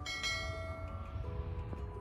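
A bright, bell-like chime with many ringing overtones that starts sharply and fades away over about a second, over soft background music. It is the sound effect of an on-screen subscribe-button animation.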